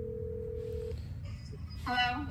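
Telephone ringing tone heard through a phone's speakerphone: one steady tone that stops about a second in, over a low line hiss. A voice comes on near the end.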